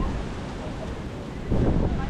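Wind buffeting the microphone over a steady rush of sea surf, with a strong gust hitting the microphone about one and a half seconds in.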